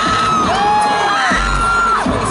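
Loud dance music through an arena sound system, with a deep bass hit about a second and a half in. Long, high held cries that glide at their ends run over it, likely fans screaming and whooping.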